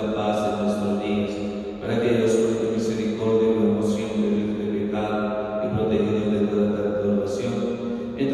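A priest chanting a liturgical prayer, a man's voice holding a near-steady reciting pitch in phrases of one to two seconds with short breaks.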